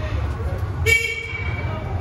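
A single short horn toot about a second in, over the steady low rumble of a shuttle bus running.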